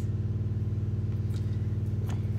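A steady low hum, even and unchanging, with a couple of faint clicks about one and a half and two seconds in.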